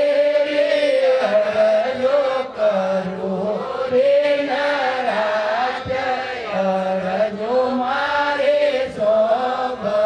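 A voice singing a devotional chant, with long held notes that bend up and down in pitch.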